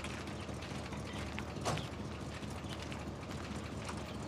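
A car door being opened and shut, with small clicks and a single thump nearly two seconds in, over a steady low hum.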